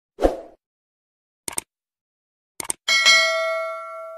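Subscribe-button animation sound effects: a short pop, two quick double mouse clicks about a second apart, then a bright bell ding that rings out for over a second.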